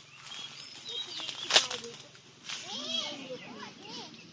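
Voices talking at a distance, too indistinct for words, with a single sharp snap or click about one and a half seconds in.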